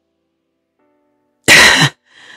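A woman's single short, loud, breathy vocal burst near the end, after a second and a half of near silence.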